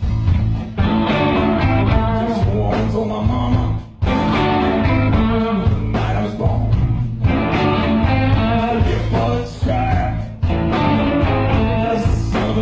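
Live rock band playing a blues number loud on electric guitars, bass and drums. The band drops out for a moment just before four seconds in and again briefly near ten seconds, in stop-time breaks.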